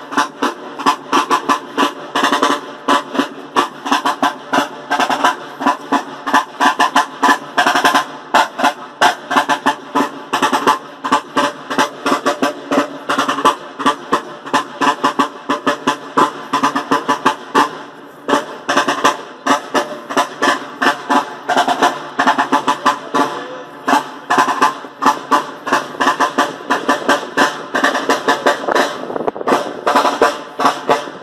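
Brass-shelled military side drum, Napoleonic style, beating a continuous marching cadence of quick, closely spaced strokes.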